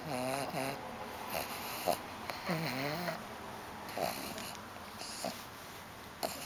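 Pug grunting and snorting: two longer pitched grunts, one near the start and one about halfway, with short nasal snorts in between.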